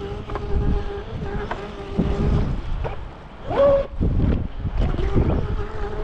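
Traxxas Spartan RC boat's brushless motor whining steadily as the boat runs across the water, with wind rumbling on the microphone and a short louder rising note a little past halfway through. The motor wires are connected the wrong way round and need to be swapped.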